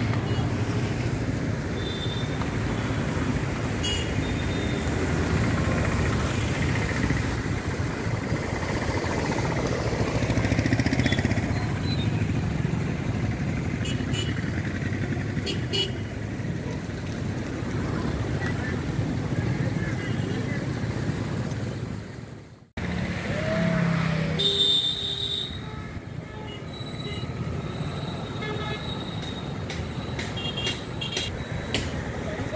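Street traffic on a flooded road: motorcycle and small vehicle engines running, with horns tooting now and then over a steady noisy hum. The sound briefly cuts out about three-quarters of the way through.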